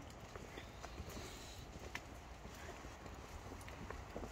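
Faint footsteps on stone paving: a few soft, irregular steps over a low steady rumble.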